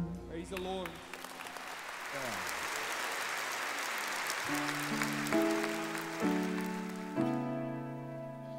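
A congregation applauding as a song ends. About halfway through, a piano comes in with slow held chords over the fading applause.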